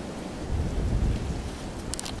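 Wind buffeting the camera microphone: a low rumble that swells about half a second in, with a couple of short clicks near the end.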